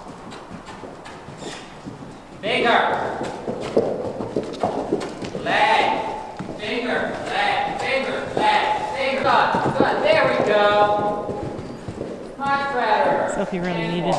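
Hoofbeats of a ridden horse going around on the dirt footing of an indoor riding arena.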